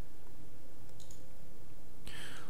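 A steady low room hum with one faint, short click about a second in.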